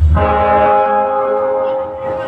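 A low thump, then a chord held on an electronic keyboard: several steady tones sustained for nearly two seconds, fading near the end.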